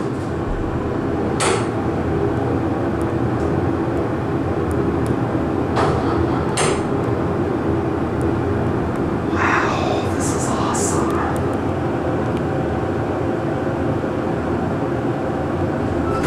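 A 1982 West Coast (Payne) hydraulic elevator travelling up: a steady hum with several pitched tones, mixed with the cab's ventilation fan. A few sharp clicks come along the way.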